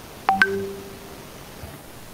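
A short electronic beep: two quick tones starting about a quarter-second in, then held briefly and fading within a second.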